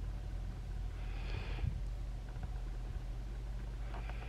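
Quiet outdoor background: a steady low rumble, with a faint brief hiss about a second in.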